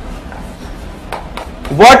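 A few faint short taps of chalk on a chalkboard as a letter is written, then a man starts speaking near the end.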